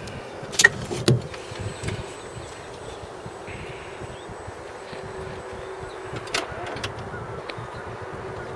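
Two sharp knocks about half a second and a second in, and another about six seconds in, over a steady low hum: handling and contact noises around the minivan's open door and body.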